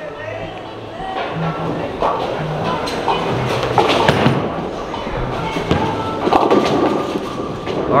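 Ten-pin bowling throw: a bowling ball is released about halfway through, rolls down the wooden lane, and clatters into the pins near the end. Music plays throughout.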